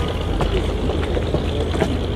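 An engine idling steadily, a low continuous rumble, with scattered faint clicks over it.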